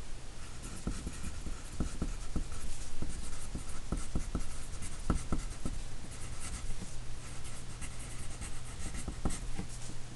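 Yellow wooden pencil writing on a pad of graph paper: quick scratching strokes and small taps of the point as a line of words is written out.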